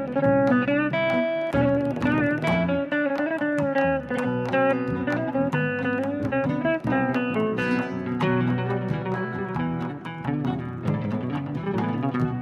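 A fretless electric guitar plays a solo melody of quick plucked notes, with pitch slides and vibrato between them, over lower sustained bass notes.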